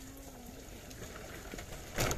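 Faint, steady background noise with no clear event, and a faint low hum in the first half second.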